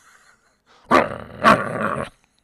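A dog barking twice, about half a second apart, starting about a second in.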